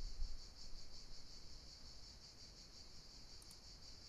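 Quiet room tone under a faint, steady high-pitched pulsing whir, with a few soft low thumps in the first second.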